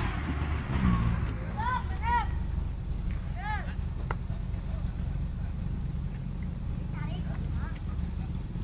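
An off-road jeep's engine running steadily with a low rumble, while people nearby give short shouted calls: a few in the first four seconds and a couple more near the end.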